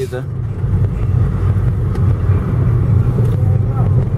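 Steady low rumble of a car's engine and tyres on the road, heard from inside the car's cabin while driving.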